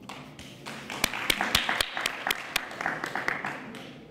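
Audience applauding: many hands clapping, with a few loud single claps standing out. It builds about a second in and thins out near the end.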